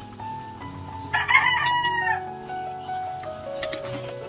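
A rooster crows once, about a second in, a single call lasting about a second that drops in pitch at its end, over steady background music.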